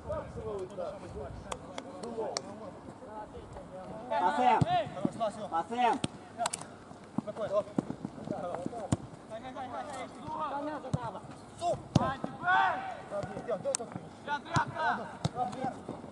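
Football being kicked during play, sharp thuds at irregular intervals, with players and coaches shouting across the pitch.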